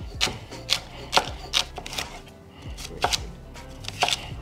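Chef's knife chopping celery and green bell pepper on a wooden cutting board, a steady run of chops at about two a second.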